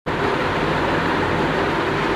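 Steady, fairly loud hiss-like noise with a faint low hum underneath, unchanging throughout.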